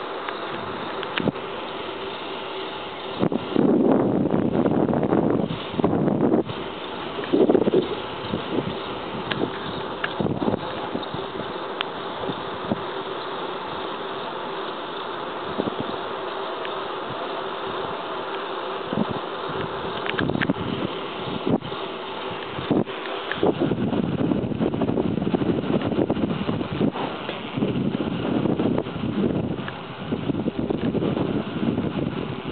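Steady buzzing hum under a rushing noise from moving along a road, with wind gusting on the microphone several times, loudest a few seconds in and again over the last several seconds.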